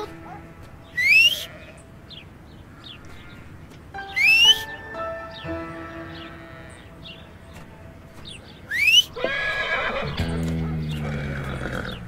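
A man whistles three times, short rising whistles a few seconds apart, calling his horse. Near the end the horse answers with a long whinny that falls in pitch, a sign that it recognises its owner's whistle.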